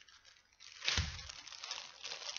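Clear plastic bags crinkling as wrapped hair bundles are handled, starting with a thump about a second in and carrying on as continuous rustling.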